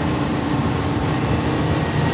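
Motorboat engine running steadily under way, a low even hum with a rushing noise of water and wind over it.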